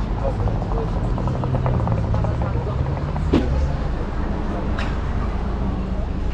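Shisha water base bubbling as smoke is drawn through it: a steady low gurgle with many small quick pops, strongest from about a second and a half to three seconds in.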